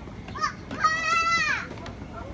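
A child's high-pitched shout: a short rising cry, then a loud held call lasting under a second that rises slightly and falls away, over faint crowd chatter.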